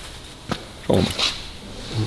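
A man's brief spoken phrase, with one short click about half a second in.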